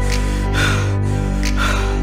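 Background music: sustained held chords with short hissing accents about once a second.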